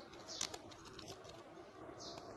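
Faint cooing of a bird, with one short click about half a second in.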